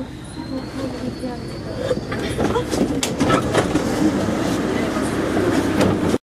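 Paris Métro train running through a tunnel, heard from the driver's cab: a steady rumble that grows louder about two seconds in, with a run of sharp clicks and clatter from the wheels on the track.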